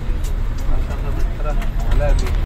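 Steady low engine and road rumble heard from inside a moving vehicle's cabin, with people talking indistinctly over it.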